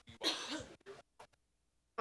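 A person clearing their throat close to a handheld microphone, one short rasping burst, followed by two faint clicks.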